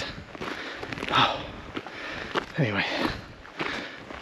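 A man breathing hard after a steep uphill hike, with two short voiced sounds, about a second in and near three seconds, over footsteps on a stony path.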